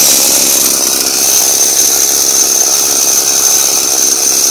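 A 42cc Homelite chainsaw engine, a small two-stroke, idling steadily on a friction-drive motorized bicycle.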